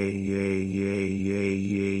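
A text-to-speech voice repeating "yeah" over and over at a flat, unchanging pitch, about twice a second.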